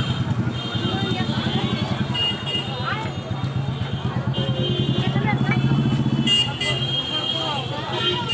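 A motor vehicle engine running at idle close by with a steady low throb, fading out about six and a half seconds in, amid street traffic and voices.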